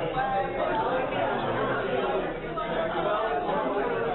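Indistinct chatter of people talking, with no words clear, running steadily.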